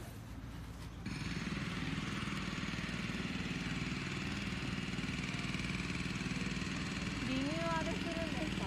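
A steady engine drone sets in abruptly about a second in and runs on evenly.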